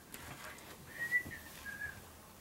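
Someone whistling softly, a few short held notes that step a little up and down in pitch, with faint taps in the background.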